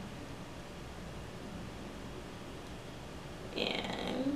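Quiet room tone: a steady low hum, with a brief soft noise near the end.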